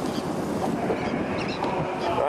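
Steady rush of wind on the microphone over water sloshing around a small boat on choppy water.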